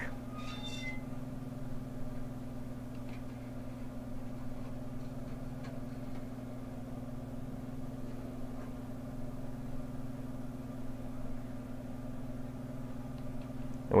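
An exhaust fan and a duct-testing fan running together on a metal duct, with a steady, even hum.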